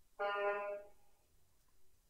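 A single short, steady pitched tone rich in overtones, starting sharply and dying away within about a second.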